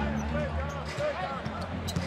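Basketball dribbled on a hardwood arena court, a few bounces heard, over the steady murmur of an arena crowd with scattered voices.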